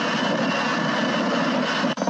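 Loud, steady rushing engine noise with no clear pitch, of the kind an aircraft engine makes. It cuts off suddenly just before the end.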